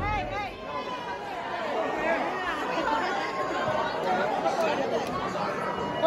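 Many people talking at once in a large hall: overlapping crowd chatter, just as loud music cuts off at the very start.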